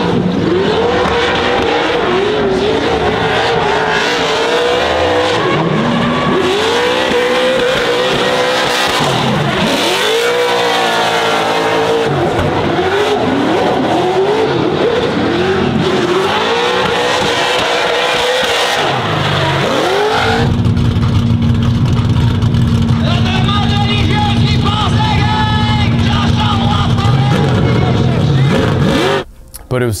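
Drift cars' engines revving hard through a tandem drift battle, the pitch swooping up and down again and again as the throttle is worked. About twenty seconds in it settles into a steady drone.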